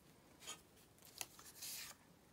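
Faint paper handling as collage cut-outs are moved on a journal page: a brief rustle, a small tap, then a longer paper rustle near the end as a cut-out is lifted.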